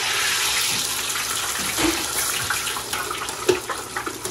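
Potato strips frying in the hot oil of a home deep fryer: a loud, steady sizzle, with scattered sharp pops in the second half.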